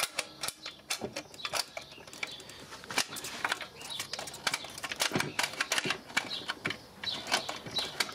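Irregular clicks and clacks of a BSR record changer's plastic speed-selector and start/auto control levers being worked back and forth by hand. The levers are stiff from not being used in a long time.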